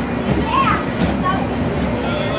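Children's voices calling and shouting in short high bursts while playing in an inflatable bounce house, over a steady low hum.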